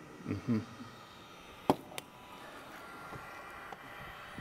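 An insulated drinking tumbler set down on a work table: one sharp knock a little before the middle, then a lighter one, over faint room tone.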